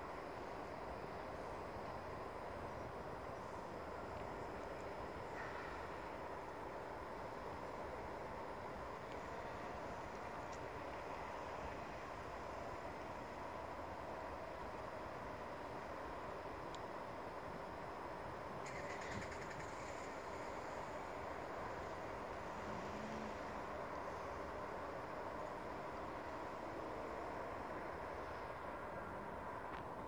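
Steady outdoor background noise, a constant distant hum like far-off traffic, with no distinct events.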